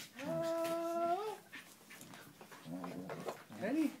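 A baby's drawn-out vocal sound, held steady for about a second and rising at the end, followed by a few shorter, softer vocal sounds.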